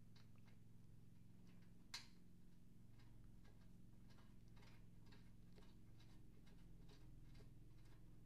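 Near silence: faint small metallic ticks of a square nut being fitted and turned by hand onto a threaded rod, with one sharper click about two seconds in, over a low steady hum.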